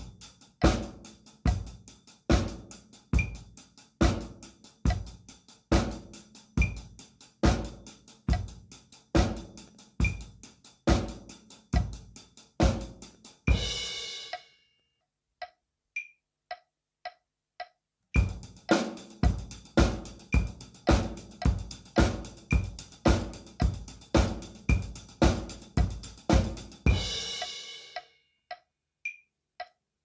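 Drum kit playing a basic sixteenth-note beat: both hands alternating on the closed hi-hat, bass drum on every beat and snare on two and four. It is played first at 70 bpm, then, after a pause filled only by steady metronome clicks, again faster at 110 bpm. Each run ends on a cymbal stroke left ringing.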